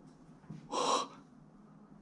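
A single short breathy gasp, lasting under half a second, about three-quarters of a second in.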